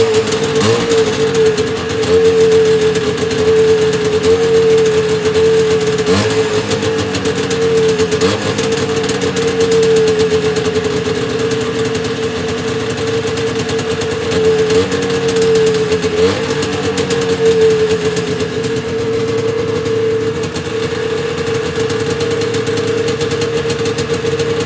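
1976 John Deere 300 snowmobile's two-stroke engine idling steadily just after a cold start, with a few short blips of the throttle in the first two-thirds.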